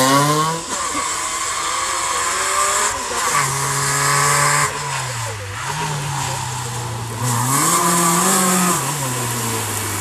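Fiat 850 rally car's four-cylinder engine running hard as it drives past, its note rising and falling several times as the driver accelerates, lifts off and changes gear.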